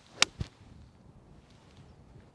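A pitching wedge strikes a golf ball once with a sharp, crisp click. A duller low thump follows about a fifth of a second later.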